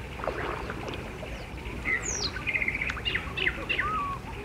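Several birds calling: scattered short chirps, a steep falling whistle about two seconds in, and a quick trill right after it, over a low steady rumble.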